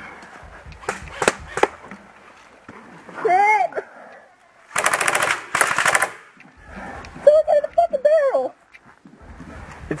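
Airsoft rifle fire: a few single sharp shots about a second in, then two short rapid full-auto bursts around the middle.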